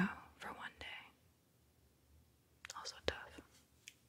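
Soft whispering trails off, then near quiet. About three seconds in comes a brief run of light scratchy clicks from a pen circling an answer on paper.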